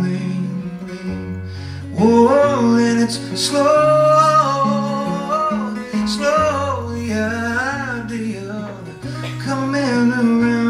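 Acoustic guitar playing a song, with a man's voice singing a sliding melody over it from about two seconds in, the held notes wavering with vibrato near the end.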